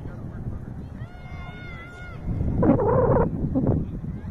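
Raised voices calling out on a soccer field: a high, held call lasting about a second, then a louder, closer burst of voice just past the middle, over a steady low rumble of wind on the microphone.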